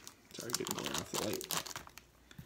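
Small clear plastic bag crinkling as it is handled and opened by hand, with some low mumbled speech over it.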